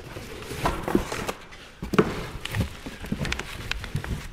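Cardboard box and plastic-wrapped packing being handled and rummaged through: irregular rustling with scattered light knocks.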